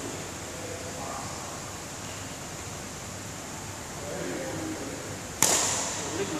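One sharp crack of a badminton racket striking a shuttlecock near the end, ringing on briefly in the hall.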